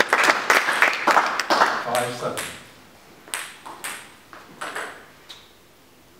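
Plastic table tennis ball bouncing with sharp pings: several single bounces spaced well apart in the second half, as the ball is bounced before a serve. A man's voice and busier clatter fill the first two seconds.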